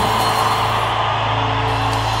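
A large crowd applauding, with instrumental music holding steady low notes underneath.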